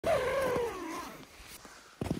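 Tent door zipper pulled open, a buzzing rasp that falls in pitch as the pull slows, fading out after about a second.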